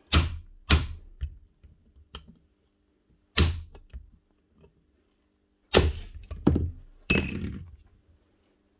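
A hammer striking a steel centre punch held on the end of a Hitachi TR8 router's armature shaft, about six sharp metallic taps at uneven intervals. The taps drive the shaft out of the router's aluminium bearing housing, and the shaft is already moving.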